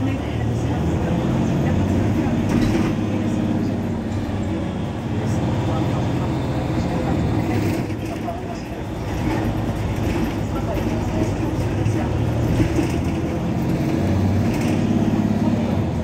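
Mercedes-Benz Citaro C2 Euro 6 city bus's diesel engine idling steadily while the bus stands stopped.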